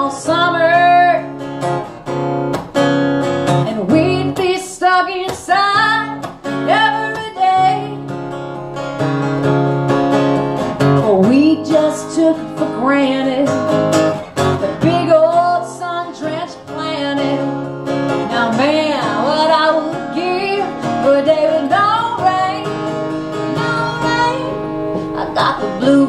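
A woman singing live while strumming an acoustic guitar, her voice carried over the steady strummed chords.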